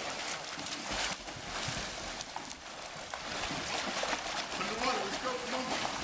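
Steady splashing and churning of water from a swimmer's legs kicking, with no arm strokes, in an outdoor pool.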